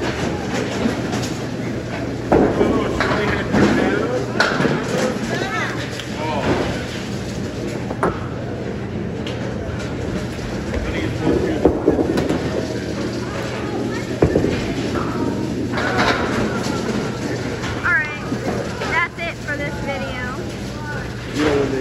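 Busy bowling alley din: balls rolling on wooden lanes, with scattered sharp knocks of balls and pins and a steady low hum. People's voices, some high-pitched, carry on throughout.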